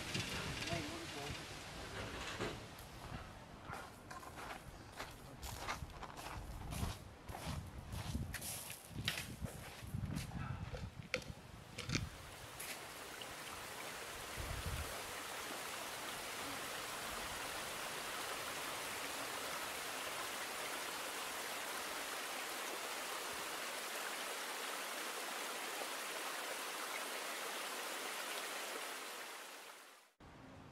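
Creek water rushing over rocks, a steady even wash that comes in about halfway through and fades out just before the end. Before it comes a run of irregular clicks and knocks with some low rumble.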